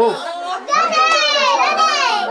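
Crowd of voices in a packed room, with a high-pitched voice calling out loudly, rising and falling in pitch, from just under a second in.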